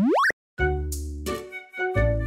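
A short cartoon sound effect that rises quickly in pitch and cuts off suddenly. After a brief silence, bouncy children's background music resumes.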